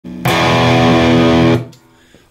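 Electric guitar, a left-handed Gibson SG, struck once on an E power chord about a quarter second in; it rings steadily for over a second and is then damped short.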